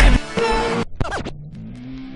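Edited transition sound effect: a heavy low hit, a short held tone that cuts off abruptly, and a quick pitch sweep, then quieter music with held notes.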